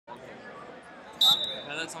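Referee's whistle, one short blast about a second in, signalling the start of the wrestling bout.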